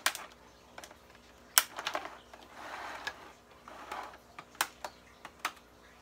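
Sharp clicks and snaps, the loudest about a second and a half in, with soft crinkling of a clear plastic packaging tray as an action figure is worked free of its package with a small hand tool.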